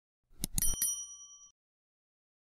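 Subscribe-button animation sound effect: a few quick mouse clicks about half a second in, together with a bright bell ding that rings out for about a second.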